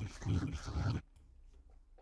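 A person gulping a drink from a bottle close to the microphone, in a few loud swallows that stop about a second in, followed by a few faint clicks.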